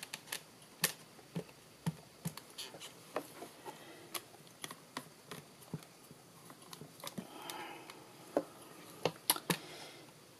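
Quiet, scattered light clicks and taps of a rubber stamp being dabbed with an ink pad and the hinged clear lid of a stamp-positioning platform being closed and pressed down, with a soft rustle about seven seconds in.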